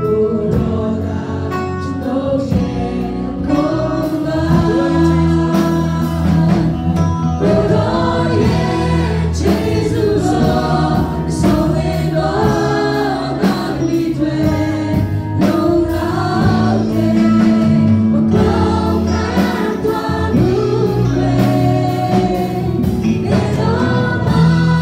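Live gospel worship song played through a PA: a group of singers on microphones over band accompaniment with a steady beat.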